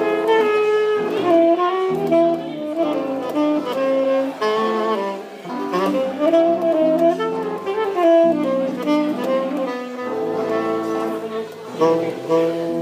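Jazz music: a lead melody line of changing notes moving over a lower accompaniment.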